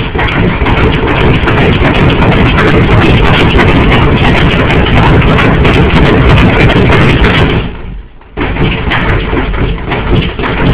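Loud, harsh amplified feedback noise with no clear pitch. It breaks off briefly about eight seconds in and comes straight back.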